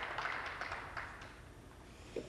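Faint scattered applause and taps from a few members, dying away into quiet room tone of the chamber.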